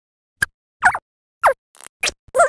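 Cartoon character voices and sound effects played back at five times normal speed, heard as three short, squeaky chirps with bending, mostly falling pitch about half a second apart, followed by a brief hiss near the end.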